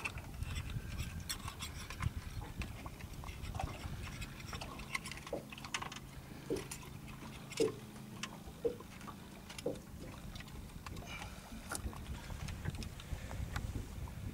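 Small waves lapping against the hull of a small boat, with soft slaps roughly once a second through the middle of the stretch, over a low steady rumble and a few light handling clicks.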